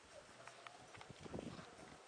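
Faint, irregular knocks and shuffling, thickest about a second and a half in.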